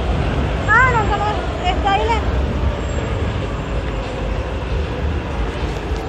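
Steady low rumble of busy street and station noise, with short snatches of voices about one and two seconds in.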